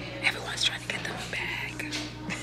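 A woman whispering close to the microphone in short breathy phrases.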